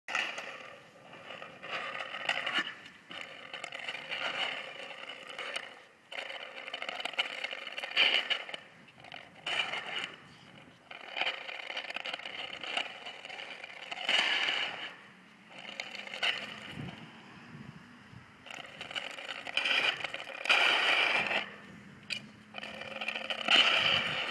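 A plastic frisbee scraping and rattling over concrete paving stones as a whippet pushes and drags it along the ground, in irregular scrapes of a second or two.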